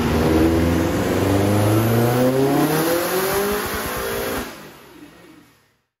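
Turbocharged 2.1-litre EJ20 stroker flat-four of a Subaru Impreza GC8 pulling on a chassis dyno, its pitch climbing steadily as the revs rise under load. The sound drops off sharply about four and a half seconds in and fades away.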